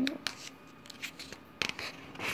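Paper pages in a ring binder being turned: soft rustling and light clicks, with a louder crackle of paper about one and a half seconds in.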